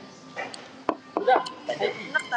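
A plastic spoon knocking and scraping against a plastic plate while cutting into sticky rice, with a sharp tap about a second in. Faint voices behind.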